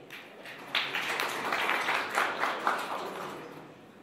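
Audience applauding. It starts suddenly about a second in and fades out toward the end.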